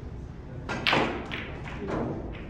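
Snooker balls knocking against each other and against the cushion: a few sharp knocks, the loudest a little under a second in, then several lighter ones.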